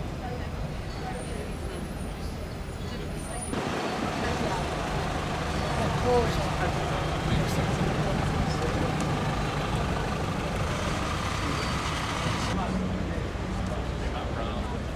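Street traffic with a steady low engine hum and people talking nearby. The sound changes abruptly about three and a half seconds in and again near the end.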